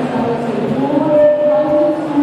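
Music with a singing voice, one note held for about a second in the second half.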